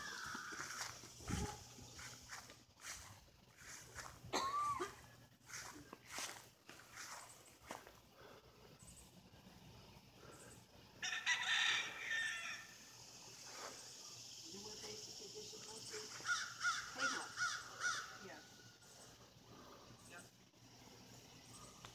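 A rooster crowing faintly once, about eleven seconds in, with a broken run of shorter calls near the end.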